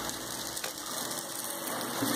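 Dry rice grains pouring steadily from a plastic bag into a plastic cup, a continuous even hiss.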